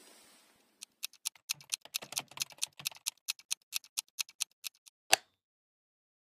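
A rapid run of sharp clicks, about seven a second for some four seconds, ending with one louder click, then silence.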